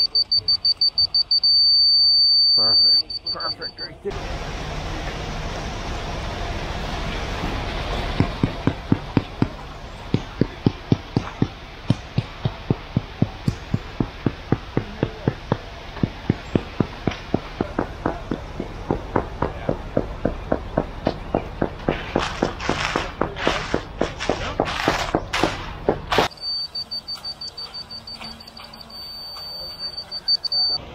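Laser-level receiver on a grade rod giving a steady high tone that breaks into rapid beeps, signalling whether the rod is on grade; this happens once at the start and again near the end. In between, a steady noise runs with a regular knocking of about two or three a second.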